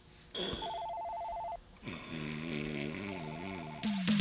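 A telephone ringing in two bursts, about a second long and then a shorter one near the end, with a low wavering drone between the rings.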